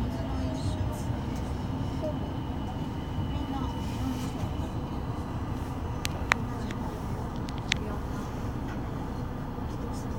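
Inside a Tama Monorail car standing at a station: a steady low hum from the car, with a few sharp clicks about six to eight seconds in, the loudest about six seconds in.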